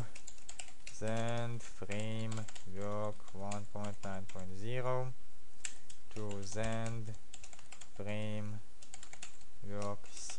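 Typing on a computer keyboard, a run of keystroke clicks as a command is entered in a terminal. A man's voice sounds several times over the typing without clear words.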